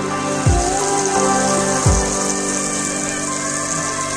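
Caramel and melted butter sizzling in a pan, a steady high hiss, over background music with a slow beat.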